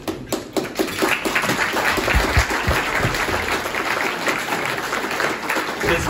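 An audience applauding: dense, steady clapping from a room full of people.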